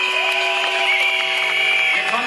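Protest crowd responding with many whistles and horns blown at once, held notes at several different pitches overlapping, some bending up and down, over a background of crowd noise.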